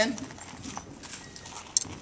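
Faint handling of a Recon Scout Throwbot XT throwable robot, with one sharp click near the end.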